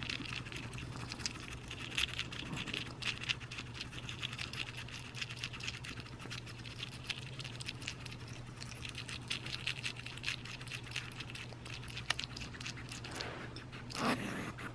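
An African pygmy hedgehog chewing live mealworms and beetles: a fast, irregular, crunching crackle of small wet clicks.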